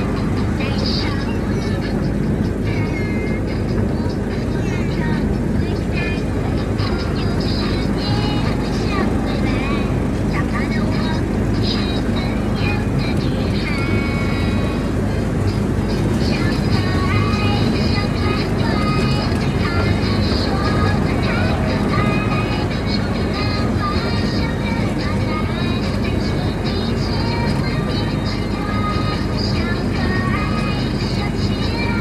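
A steady low rumble, like a slow-moving vehicle, with voices and music over it.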